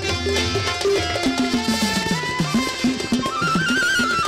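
Instrumental interlude of a Bengali Baul folk band: tabla and a stick-struck barrel drum keep a quick rhythm, their low strokes bending in pitch, under a melody line that climbs in steps through the middle and falls back near the end.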